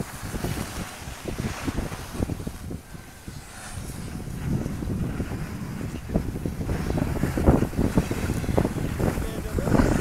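Wind buffeting the microphone as the camera moves down a snow slope: an uneven low rumble that dips briefly a few seconds in, then builds again.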